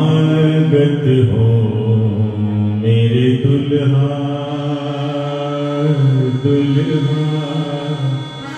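A man singing a devotional hymn in long, drawn-out notes, accompanied by harmonium.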